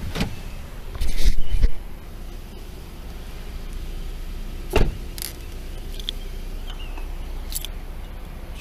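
Police officer getting out of a patrol car with a body camera on his chest. A loud rustle of gear and clothing against the camera comes about a second in. A single sharp knock follows near the middle, the car door shutting, with a few small clicks and jingles of duty-belt gear after it, over a low steady rumble.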